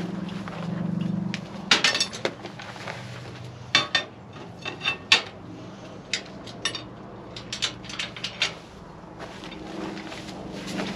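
Steel orphan grafting headgate clanking and rattling as its metal panels are swung shut and latched around a doe's neck: a string of irregular sharp metal knocks, the loudest about two, four and five seconds in.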